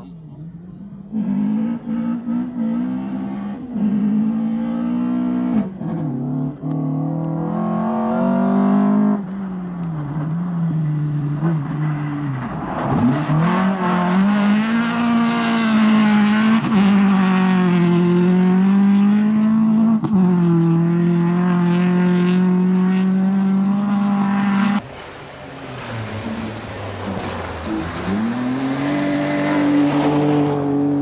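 Rally cars on a gravel stage, engines revving hard and dropping back through gear changes as they pass, one of them a Volvo 940 saloon sliding through a corner. The sound jumps abruptly several times between separate passes.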